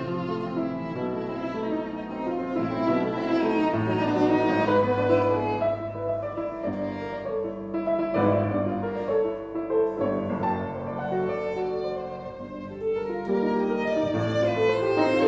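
A violin and an 1870 Baptist Streicher Viennese grand piano playing Romantic chamber music together, the violin carrying a sustained, singing melody over flowing piano accompaniment.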